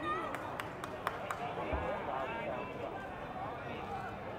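Voices of people talking and calling across a stadium pitch, with a few sharp clicks in the first second and a half.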